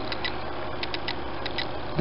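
Repurposed PC cooling fan in a DIY magnetic stirrer running with a steady low hum, spinning a stir bar that whirls a vortex in a flask of e-liquid. Over it come irregular light clicks from the camera's noisy autofocus.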